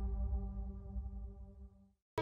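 The tail of a logo intro sting: one held, steady electronic tone over a deep bass, fading away to silence near the end.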